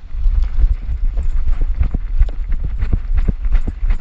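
A camera harnessed on a small dog's back jolting as the dog runs: quick, irregular thumps from its footfalls and the mount knocking, about four or five a second, over a loud low rumble on the microphone.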